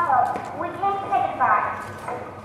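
A young performer's high-pitched voice speaking lines in several short phrases, with falling inflections.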